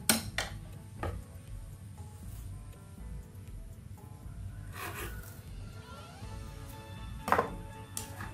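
Faint background music with a few clinks and knocks of wooden chopsticks and a kitchen knife against a china plate and a wooden cutting board while marinating meat, the sharpest knock coming near the end.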